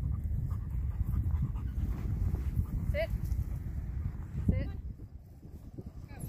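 A Rottweiler panting over a steady low rumble, with two short high calls about three and four and a half seconds in.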